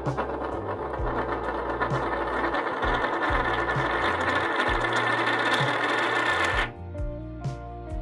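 A coin in a plastic capsule spinning down on a wooden table, its rattling whirr growing louder as it wobbles lower, then stopping abruptly about two-thirds of the way through as it drops flat. Music plays underneath.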